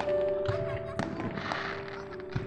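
Fireworks going off in the distance, a few sharp bangs followed by a crackling burst, over music playing steadily throughout.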